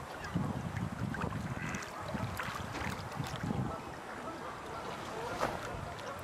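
Wind buffeting the microphone in gusts over a steady wash of lake water.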